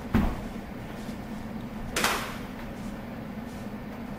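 Two thuds about two seconds apart, the first deep and the louder, the second sharper: impacts from a karate technique being demonstrated on a partner.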